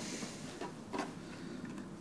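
Soft rustling of a cloth dust bag being pulled down off a speaker cabinet, with a light knock about a second in.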